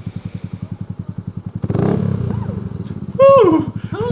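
Motorcycle engine running with an even train of firing pulses, louder after a cut about one and a half seconds in. Near the end a loud, short cry falls steeply in pitch, followed by a briefer one.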